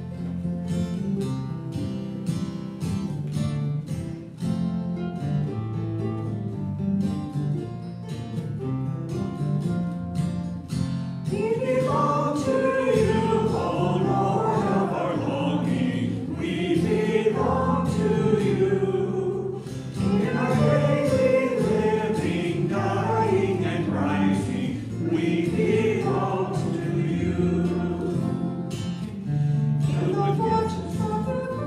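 Strummed acoustic guitar playing the introduction to a church song, then voices singing along from about eleven seconds in.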